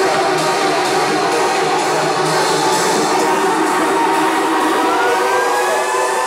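House music DJ mix in a breakdown with the bass thinned out, while a synth riser glides upward from about three seconds in and levels off near the end, a build toward the drop.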